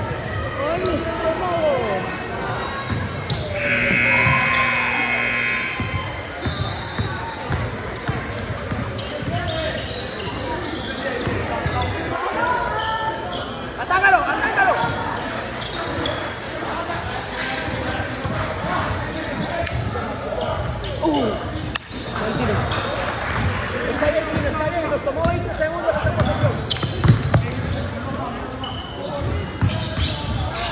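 A basketball bouncing on a hardwood gym floor during a game, with players and spectators calling out and the echo of a large hall. About four seconds in, a steady buzzer tone sounds for roughly two seconds.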